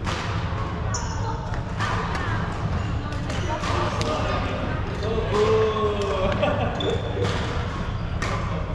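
Badminton rally in a large, echoing sports hall: sharp racket-on-shuttlecock hits and footfalls at irregular intervals, with a few brief shoe squeaks on the wooden floor. Voices talk in the background.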